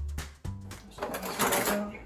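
Background music with a plucked bass line, then, about a second in, a kitchen cutlery drawer rattling as metal utensils clatter inside it and a small metal strainer is taken out.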